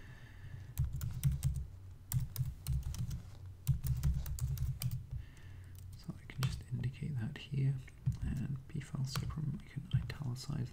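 Typing on a computer keyboard: irregular runs of keystroke clicks broken by short pauses.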